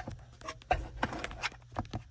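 Light clicks and knocks of a plastic mirror-mount trim housing being handled and lined up against the windshield mount, several short taps about a second in, over a low steady hum.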